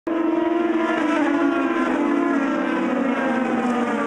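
IndyCar racing cars' twin-turbo V6 engines at high revs, several cars together giving a steady, high engine note whose pitch slowly sags over the last couple of seconds.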